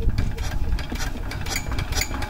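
Single-cylinder diesel engine of a two-wheel walking tractor idling, a steady low running sound with a quick, uneven mechanical clatter.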